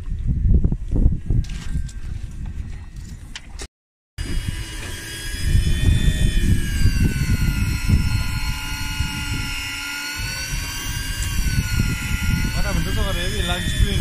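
Daiwa electric fishing reel motor whining steadily as it winds line in against a heavily bent rod, its pitch wavering slightly with the load. A low rumble runs underneath. Before a short break about four seconds in, only rougher rumbling and a few knocks are heard.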